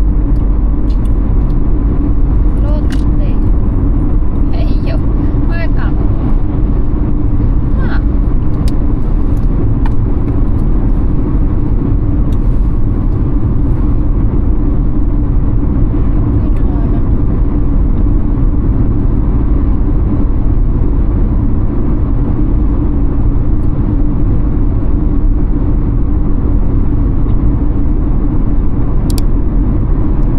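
A car driving steadily at road speed: a continuous low rumble of tyres and engine.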